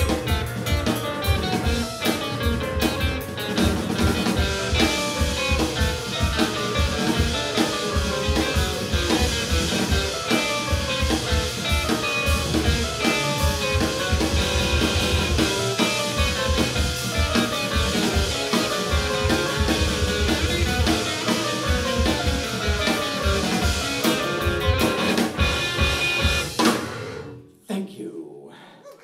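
Live rock band playing loud: electric guitar riffs over bass guitar and drum kit. The song stops abruptly about a second before the end.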